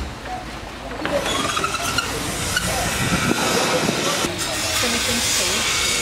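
Construction-site background noise: a steady hiss that gets louder about a second in, with faint distant voices of workers.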